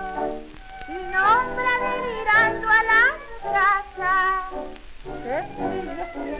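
Late-1920s tango recording in a passage without singing: a melody line with wide vibrato and sliding notes over the accompaniment.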